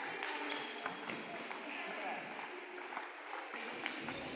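Table tennis balls clicking off rackets and tables, an irregular run of sharp ticks from rallies on more than one table at once.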